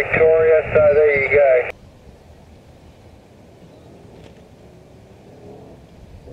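A man's voice received over single-sideband on a Yaesu HF transceiver's speaker, thin and narrow-band, cutting off abruptly under two seconds in. A faint steady hiss follows.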